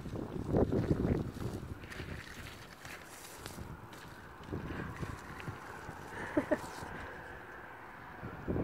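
Wind buffeting the microphone in uneven gusts, strongest in the first second and again around the middle, with two short faint calls about six and a half seconds in.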